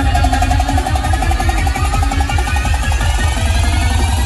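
Loud electronic DJ music played through a large outdoor sound system, with heavy bass and a fast repeating beat.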